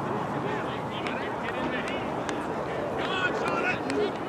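Indistinct overlapping voices of players and spectators across an open field, with a few louder calls near the end.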